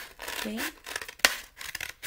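Scissors snipping through a folded paper plate: several crisp cuts with paper rustle, the loudest snip just past halfway.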